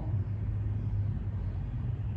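A steady low background rumble with no clear events in it.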